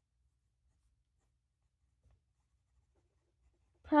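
Very faint scratching of a broad-nib TWSBI Go fountain pen writing on paper, close to silence; a woman starts speaking right at the end.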